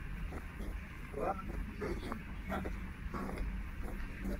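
Indistinct voices of people nearby, in short snatches, over a steady low hum.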